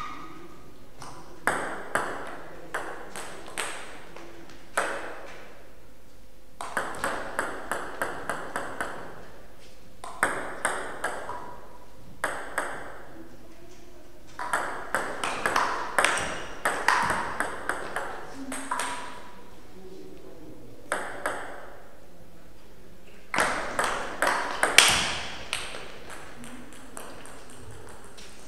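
Table tennis ball clicking off bats and table in a string of short rallies, about three to four sharp clicks a second, separated by pauses between points.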